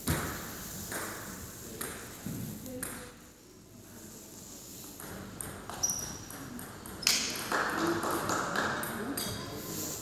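Table tennis ball clicking sharply off bats and table during rallies, single knocks about a second apart, echoing in a large sports hall, with voices in the background.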